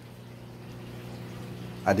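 A steady low electrical hum, even and unchanging, under a faint hiss.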